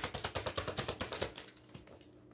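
Tarot deck being shuffled: a rapid run of card clicks, about fifteen a second, that fades out about a second and a half in.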